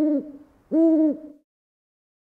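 Two hooting calls, each rising and then falling in pitch; the second comes about three-quarters of a second in.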